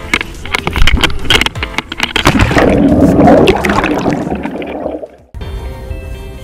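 Water splashing and gurgling around an action camera held at the water's surface: sharp, irregular splashes at first, then a churning rush in the middle. It cuts off abruptly about five seconds in, with background music under it and continuing after.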